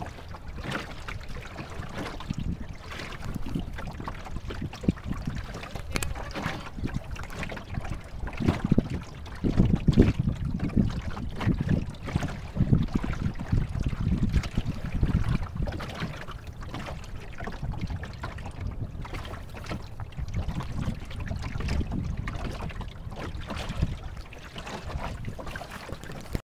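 Wind noise on the microphone, swelling and fading in gusts, over water washing and trickling along the hull of a small wooden sailboat under way.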